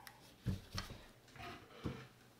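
A few light knocks and clicks of a metal blade balancer and its parts being handled and set down on a table, the loudest about half a second in and near the end.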